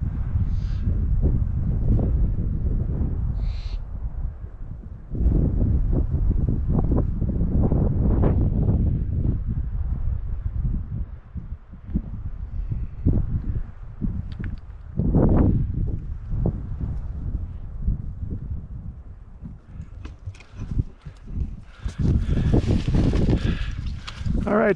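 Wind buffeting the microphone in gusts, a low rumble that rises and falls. Near the end it is joined by rustling of brush close to the microphone.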